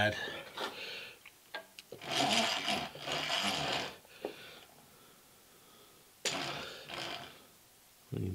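Mechanical gear-and-screw noise of a milling machine's feed mechanism as an axis is moved for an indicator check. It comes in two spells, one of about two seconds and a shorter one of about a second.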